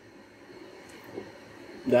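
Quiet room tone with one faint short sound about a second in, then a man's voice starting near the end.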